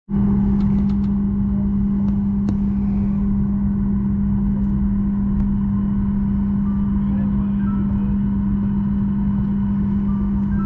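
Steady drone inside the cabin of a Boeing 737-800 on the ground: a strong low hum held at one pitch over a rushing air noise, cutting in abruptly at the start.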